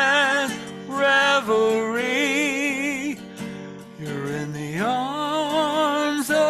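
A woman singing long held notes with a wavering vibrato, accompanied by an acoustic guitar, with a brief pause between phrases midway.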